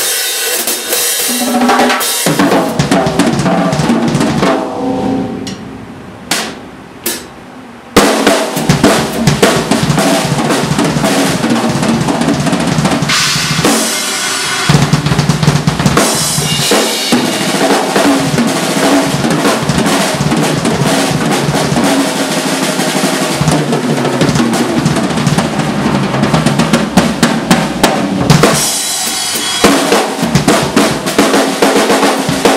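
Solo drumming on a Tama Starclassic Bubinga Elite drum kit: dense, fast playing of bass drum, snare and cymbals. About five seconds in it drops to a quieter passage with a few isolated hits, then comes back in loud at about eight seconds and keeps going.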